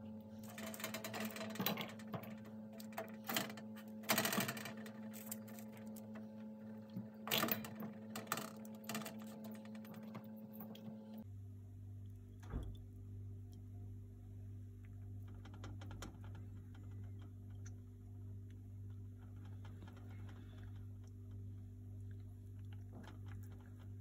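Irregular light taps and knocks of eggplant slices being set down on a parchment-lined metal baking tray. After an abrupt change to a steady low hum, a pastry brush stirs an oil mixture in a ceramic bowl with faint scrapes and small clinks.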